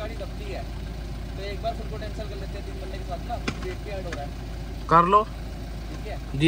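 Steady low engine and road noise inside an SUV's cabin as it moves, with faint talk. A brief loud shout with a rising pitch comes about five seconds in.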